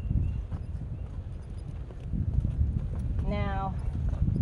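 A horse's hooves stepping on soft dirt as it is led at a walk, dull uneven thuds that grow louder about halfway through.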